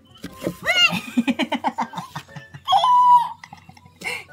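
A young girl's startled shriek as a leopard gecko bites her finger: a sharp rising cry about a second in, a quick run of short laughing sounds, then a long high squeal near the end.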